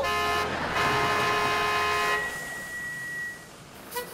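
Truck horn blaring: a short blast, then a longer one lasting about a second and a half, over the truck engine's low running.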